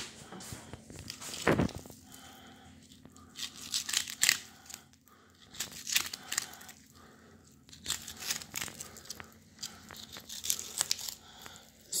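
A knife cutting along a big blue catfish's spine as the fillet is peeled back from the bones: irregular short tearing and slicing sounds, with a few sharper scrapes.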